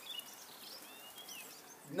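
Faint bird chirps, a few short curving high calls in the first second and a half, over quiet outdoor background noise.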